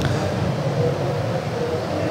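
Steady, low background noise of a large exhibition hall: an even hum and hiss with no distinct events.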